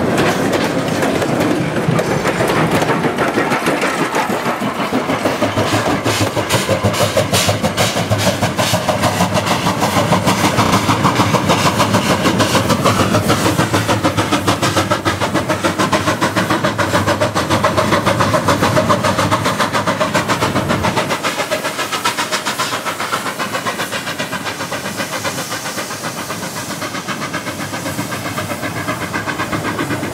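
Loaded coal hopper wagons of a steam-hauled freight train rolling past close by, wheels and bogies clattering over the rail joints in a fast, continuous rhythm. The deep rumble drops away about two-thirds of the way through.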